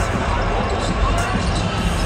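Basketballs bouncing on the court over the steady chatter of an arena crowd.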